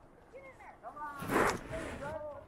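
A man's voice muttering without clear words, with a short loud burst of noise about halfway through.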